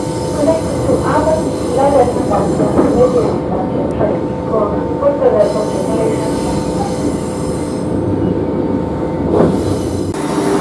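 Renfe series 450 double-deck electric commuter train heard from inside the carriage while running, its wheels squealing against the rails in short repeated chirps over a steady two-note hum and rumble.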